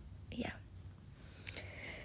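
A single voice softly saying "yeah" in a near-whisper about half a second in; the rest is quiet.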